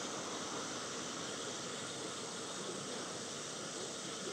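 Steady, even hiss of outdoor background noise with no distinct events.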